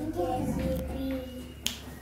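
Faint, indistinct voice sounds, then a single sharp click near the end.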